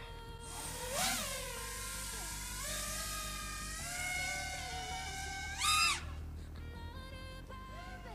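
Brushless motors and propellers of an HGLRC Rekon 5 quadcopter on a 6S battery, whining in flight. The pitch rises and falls with the throttle, with a brief louder punch about two-thirds of the way through.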